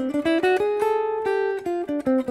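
Ibanez AR520 hollow-body electric guitar played clean through a Fractal FM9, picking a single-note jazz line. The notes climb step by step to one note held about half a second, then step back down near the end.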